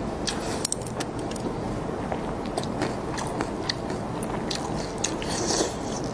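Close-up chewing of food from a spicy hot pot, with frequent short wet mouth clicks over a steady background hiss.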